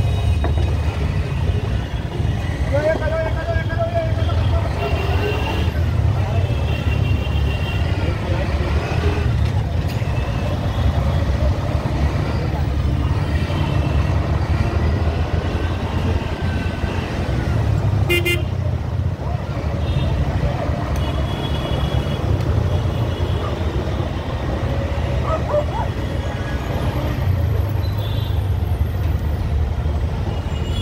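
Busy city-street traffic with a steady low rumble of engines. Vehicle horns give several short honks throughout.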